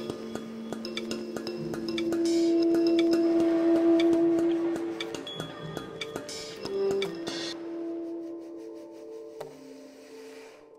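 Tenor saxophone holding a long note, loudest around the middle, over an electronic backing of bell-like tones and light ticks; the music thins out near the end.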